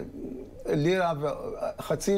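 A man humming a wordless tune: held notes, with a wavering, ornamented stretch about a second in.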